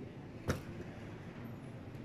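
Steady low hum and murmur of a large crowded hall, with one sharp click or knock about half a second in.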